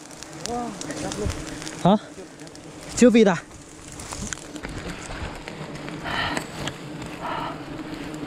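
Swarm of giant honey bees (Apis dorsata) buzzing in a steady low hum around their nest while it is being smoked, with a couple of short noisy bursts in the second half.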